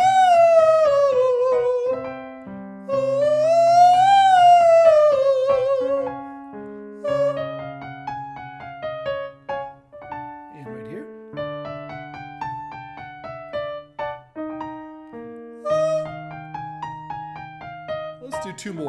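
A man singing in falsetto on an 'oh' vowel with vibrato, over piano accompaniment. He runs a scale up to F sharp 5 and back down twice in the first six seconds. After that the piano plays the exercise pattern on alone.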